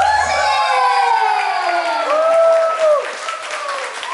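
Audience cheering and clapping at the end of a live song: drawn-out shouts, the first sliding down in pitch, over scattered claps. The band's last low note stops about half a second in.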